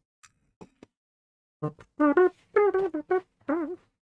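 A few faint clicks of small plastic parts dropping into a pot, then a short wordless tune of about two seconds, several notes with wavering pitch.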